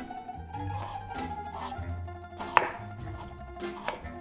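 Quiet background music with plucked strings, and a few sharp knife cuts through a carrot onto a wooden chopping board, the clearest about two and a half seconds in.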